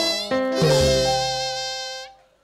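Traditional Burmese Lethwei ring music: a buzzing, reedy double-reed wind instrument (hne) plays held, wavering notes over a couple of drum strokes, then fades out at the end.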